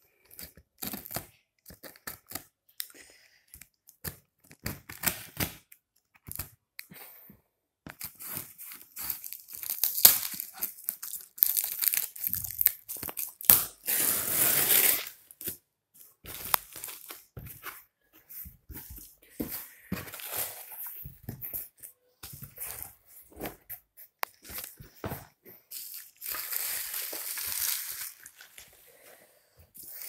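A cardboard shipping carton being opened by hand: packing tape ripped away and cardboard and plastic wrapping crinkling, in a run of short scrapes and rips. There are two longer tearing sounds, one about halfway through and one near the end.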